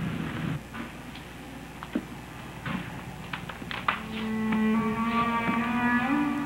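A few scattered light clicks and knocks, then about four seconds in a violin begins to play long, held notes.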